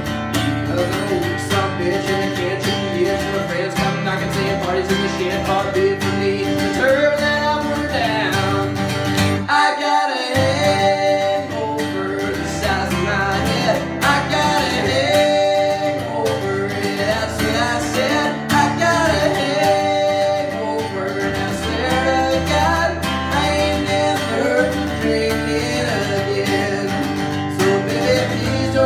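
Steel-string acoustic guitar, likely a Martin, strummed steadily through an instrumental stretch of a country-style song. A man's voice sings over it at times. The bass drops out briefly about ten seconds in.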